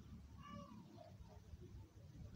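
Near silence: room tone, with one faint, short pitched call about half a second in.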